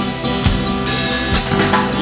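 A rock band plays between vocal lines. The drum kit is prominent, with bass drum and snare strikes over sustained bass, guitar and keyboard chords.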